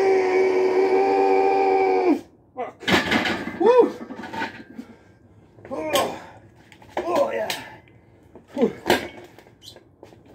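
A man straining under a heavy bench press set: a long, loud, held groan for about two seconds, then a series of short grunts and heavy breaths between reps, ending in a breathy "whew" near the end.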